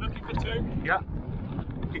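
Low wind rumble buffeting a helmet-mounted action camera's microphone while the wearer runs between the wickets, with a short call of "yeah".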